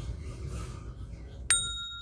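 A single bright bell ding sound effect, struck about one and a half seconds in and left ringing: the cartoon cue for a lightbulb idea.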